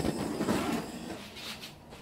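Handheld gas torch flame hissing steadily as it is played over wet acrylic paint to pop surface bubbles, dying away about a second and a half in as the torch is taken off.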